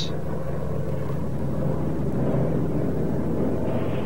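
A steady, even rumbling noise with a low hum beneath it, without sudden bangs or changes.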